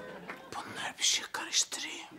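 A person whispering, with two sharp hissing bursts about a second in and again just past the middle.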